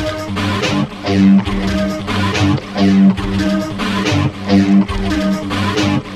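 Music played by a guitar, with chords struck and held in a steady, repeating rhythm.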